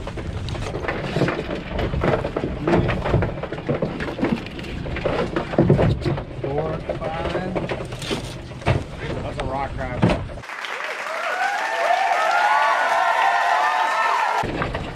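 A wire crab pot full of Dungeness crabs handled at a boat's rail: irregular knocks and clatter of the pot and crabs, mixed with voices. Near the end the sound changes to several overlapping wavering high tones with no low end.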